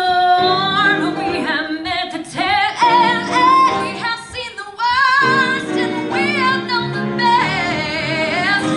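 Two women singing a show-tune duet with vibrato, accompanied by piano.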